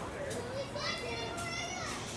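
A child's high-pitched voice calling out over the chatter of a crowd of visitors. The call rises in pitch just under a second in and holds until near the end.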